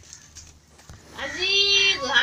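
A cat meowing once: a single drawn-out call starting a little past halfway, rising briefly and then held steady, after a quieter first second.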